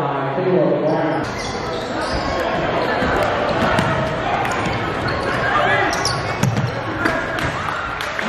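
Live basketball game sound in a large gym: a basketball bouncing on the hardwood court in repeated sharp knocks, over players' and spectators' voices that echo in the hall.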